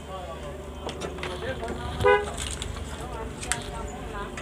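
Faint background voices, with one short vehicle horn toot about two seconds in over a steady low hum.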